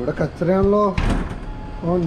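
A glass shop entrance door pushed open about a second in, letting in a rush of outside noise, between two short wordless vocal sounds from a man.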